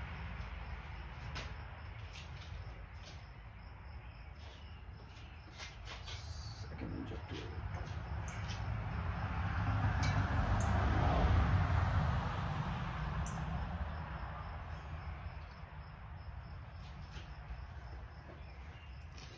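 Light rustling and a few faint clicks of wire leads being handled on an engine mockup, over a low background rumble that swells for a few seconds in the middle and fades again.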